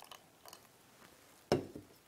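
A glass beaker set down on a tabletop: one sharp knock about one and a half seconds in, after a few faint clicks.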